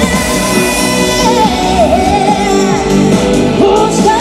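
A live pop-rock band playing loud, with a lead singer over the band.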